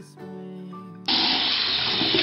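Soft background music, then the sound of a running water tap starts abruptly about a second in as a loud, steady hiss, standing for the toy sink washing the carrot.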